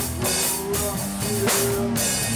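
Heavy rock band playing live: drum kit with several cymbal crashes over held electric guitar notes and bass.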